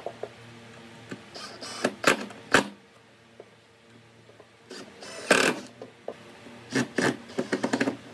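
Cordless driver running in short bursts of a second or less as it drives screws through a pine table pedestal into its base, with three runs of bursts and pauses between them. A faint low steady hum lies underneath.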